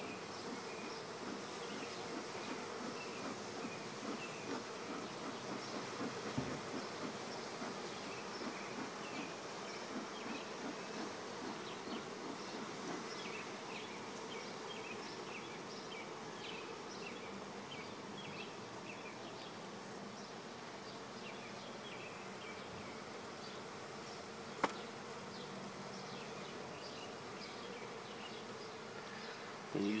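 A colony of honey bees buzzing steadily as a dense, wavering hum over the open frames of the hive. A single sharp click about 25 seconds in.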